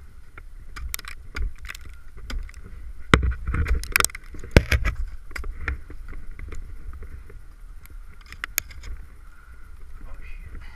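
Ice axe picks striking and biting into soft, wet waterfall ice: a series of sharp knocks and thunks, the loudest a few seconds in, over a steady low rumble. The climber finds the ice hollow.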